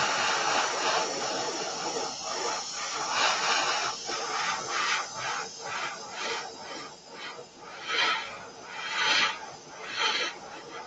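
Airbrush spraying matte black paint: a continuous air hiss that swells and eases several times as the trigger is worked in passes, with the strongest bursts near the end.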